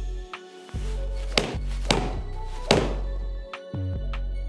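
Background music with a steady beat, with three crisp strikes of a golf iron hitting a ball off a mat. The strikes fall about a second and a half in, just before two seconds and near three seconds; the third is the loudest.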